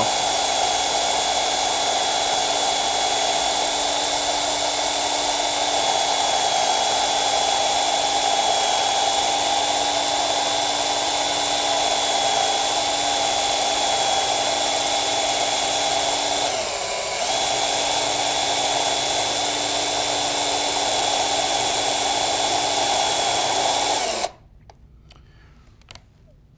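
Battery-powered IML resistance microdrill running with a steady whine as its needle-thin bit is reversed and drawn back out of the timber, with a brief dip about 17 seconds in. The motor cuts off suddenly about 24 seconds in.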